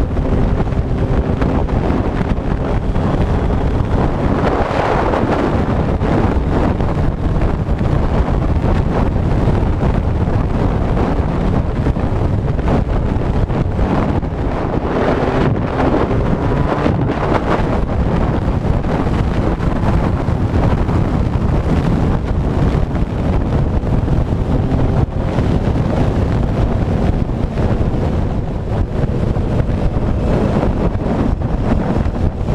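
Heavy wind noise on a helmet-mounted camera microphone while riding a Kawasaki motorcycle at road speed, with the engine running faintly underneath.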